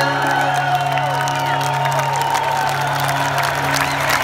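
A live rock band holding a sustained low note or drone as the song winds down, with the stadium crowd cheering and whooping over it.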